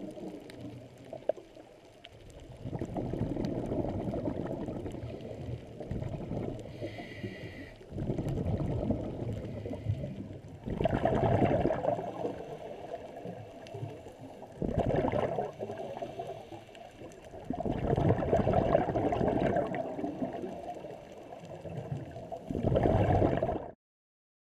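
Scuba diver's exhaled bubbles gurgling out of a regulator underwater, in surges every few seconds with quieter spells of breathing between. The sound cuts off suddenly near the end.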